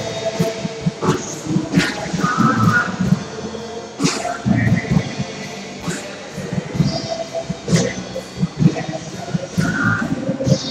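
Live music: an acoustic guitar strummed with a keyboard, repeated strums running through the passage.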